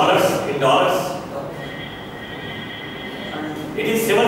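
Voices in a lecture hall calling out answers to a question, off the microphone, with a thin, high, held sound lasting about two seconds in the middle.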